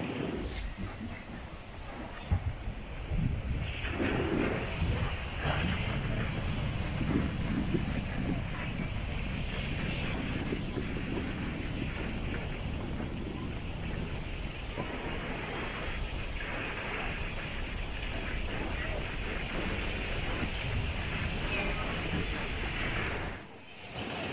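Seaside ambience: wind buffeting the microphone over a steady wash of small waves on a rocky shore. It drops away abruptly just before the end.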